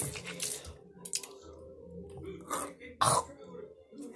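A few short mouth and throat noises from a boy, the loudest about three seconds in, as he reacts to the nasty taste of mint toothpaste.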